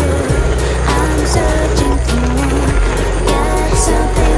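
Background music with a steady beat, a sustained bass line and a melody.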